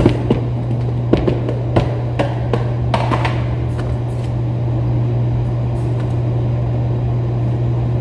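A steady low hum, with a handful of sharp clicks and knocks in the first three seconds.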